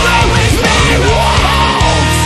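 Melodic hardcore song with a sung lead vocal and a shouted backing line over distorted electric guitars and drums.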